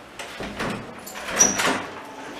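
A wooden door being opened: the handle and latch rattle, with one sharp click a little over a second in.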